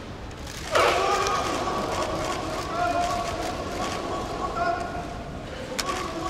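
Sumo arena crowd, quiet at first, breaks into loud cheering and shouting about a second in as the wrestlers charge, and keeps it up through the bout. A single sharp crack comes near the end.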